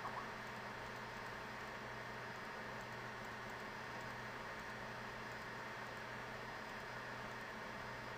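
Steady low hiss with a faint hum: the microphone's room tone, with no distinct sounds.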